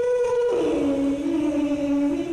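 A girl's solo singing voice through a handheld microphone, holding a long note and then dropping to a lower note about half a second in, which she sustains.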